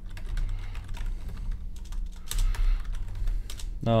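Typing on a computer keyboard: an irregular run of keystroke clicks as a line of code is entered.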